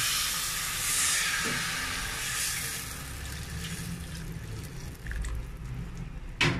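Coconut milk poured from a bowl into a hot pan of sautéed onions and pork: the liquid hisses and sizzles as it hits the hot fat, dying down after about three seconds.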